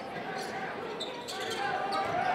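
Basketball being dribbled on a hardwood gym floor, over a steady murmur of voices in the gym.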